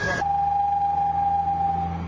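A car's exhaust whistle tip, a piece of metal welded inside the exhaust pipe, giving a steady whistle at one pitch over the low running of the engine. The whistle cuts off near the end while the engine sound carries on.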